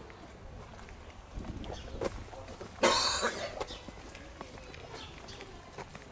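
A person coughing once, loud and short, about three seconds in, over a low outdoor background with a few faint clicks.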